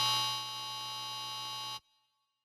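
Reveal Sound Spire software synthesizer sounding an AI-generated FX preset from its 'Crazy' mode: a held electronic tone with many steady overtones. It drops in level about half a second in and cuts off abruptly near the end.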